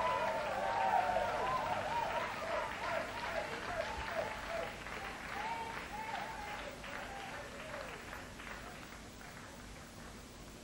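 Concert audience applauding and cheering at the end of a song, with shouts over the clapping that die away as the applause fades.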